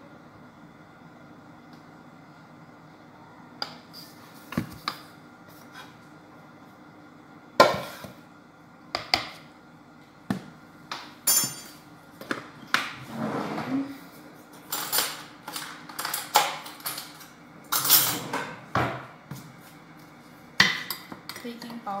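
Kitchen utensils and dishes being handled: a quiet start, then a run of sharp clinks, knocks and short scrapes beginning a few seconds in and carrying on irregularly.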